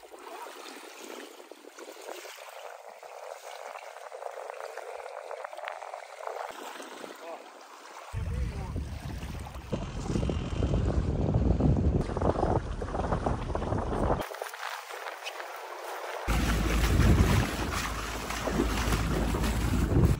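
Small waves lapping and trickling over a pebble beach. After about eight seconds this gives way to rushing wind and water from a boat under way, with the wind on the microphone loudest in the last few seconds.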